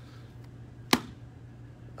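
A single sharp slap about a second in, a hand coming down on the cover of a small hardcover Bible.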